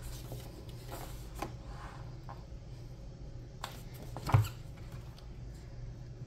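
Paperback book pages being turned and handled: light paper rustles and small clicks, with one louder soft knock a little over four seconds in as the book is closed onto the table, over a steady low hum.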